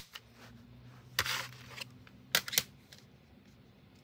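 Plastic CD jewel case being handled: a click with a short scrape about a second in, then two quick clicks a little past halfway.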